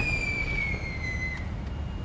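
A single high whistle gliding slowly down in pitch and fading out about a second and a half in, taken for fireworks, over a steady low rumble.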